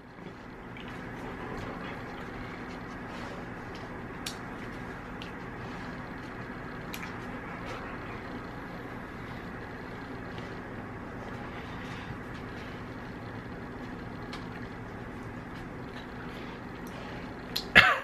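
Steady kitchen room noise with a low constant hum, broken by a few faint clicks.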